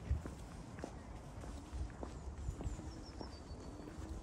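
Footsteps on stone paving slabs, steady at about two steps a second, over a low rumble.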